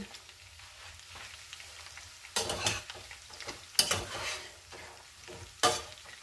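Chicken pieces sizzling in a stainless steel saucepan and being stirred with a metal spoon, in three short bursts over a faint background.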